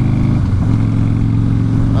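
Harley-Davidson Softail Springer's V-twin engine running steadily while the bike rides along the road. Its note dips briefly about half a second in, then holds level.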